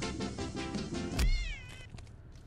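Music playing, cut off about a second in by a sudden heavy thump and a cat's yowl that bends down in pitch: the car striking the cat.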